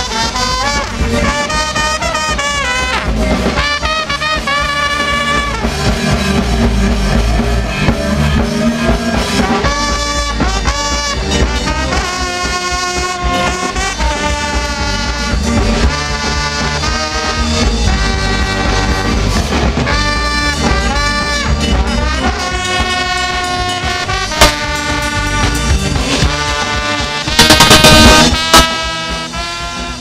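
Live ska band playing an uptempo ska song, with a trombone-led horn section carrying the melody over the bass and drums. A short, very loud burst of noise cuts across the music near the end.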